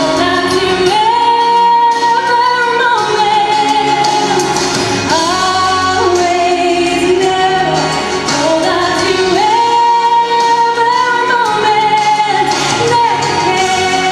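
A woman singing solo into a handheld microphone over musical accompaniment, holding long notes that rise and fall between phrases.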